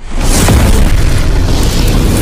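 Cinematic boom sound effect of an animated logo intro: a sudden loud deep hit after a moment of silence, carrying on as a dense, noisy rush heavy in the low end.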